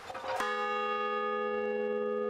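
A large hung bronze bell struck once about half a second in, then ringing on with a steady, sustained chord of several tones.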